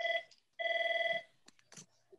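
Electronic alert tone sounding twice at one fixed pitch: a short beep, then a longer beep of about two-thirds of a second, like a phone ringing or notifying, followed by a few faint clicks.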